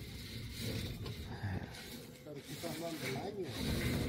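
Faint, distant talking over a low, steady outdoor hiss.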